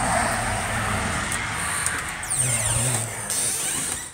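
A road vehicle going past: a steady rush of tyre and engine noise, with a falling pitch a little past the middle as it passes.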